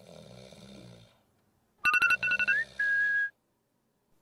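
A faint snore, then a phone alarm tone about two seconds in: a quick run of short electronic beeps, a rising slide in pitch, and one held tone that cuts off after about half a second.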